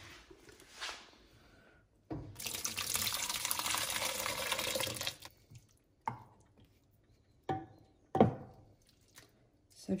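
Thick red wine sauce pouring from a stainless steel pot into a slow cooker's ceramic insert over beef short ribs, a steady splashing pour of about three seconds starting about two seconds in. A few short knocks follow.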